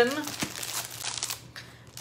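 Packs of designer series paper being handled and shuffled, their wrapping crinkling in irregular small rustles.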